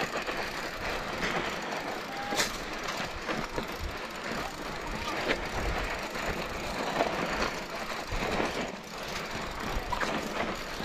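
Mountain bike rolling downhill over loose gravel and rocks: a continuous crunch and rumble of tyres on stones, with the bike rattling and knocking over bumps.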